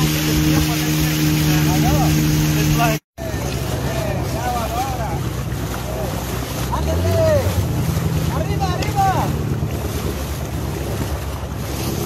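Outboard motor of a long river canoe running steadily under way. After a break about three seconds in, water rushes and splashes against the hull and a wading man's legs as the motor runs on, its pitch rising about seven seconds in.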